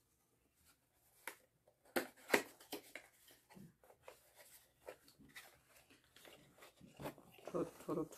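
Cardboard packaging being opened and handled, with scattered light clicks, taps and rustles as a glass Avon Winnebago motorhome aftershave decanter is taken out of its box.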